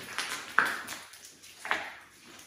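Two sharp metallic knocks, each with a short ring, about a second apart.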